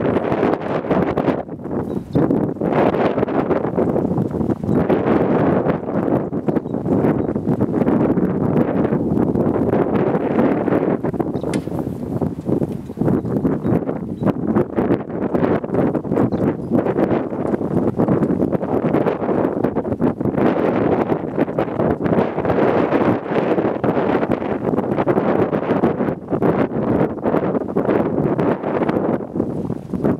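Horse-drawn sickle-bar mower clattering as a mule team pulls it through hay, mixed with wind buffeting the microphone that swells and eases every few seconds.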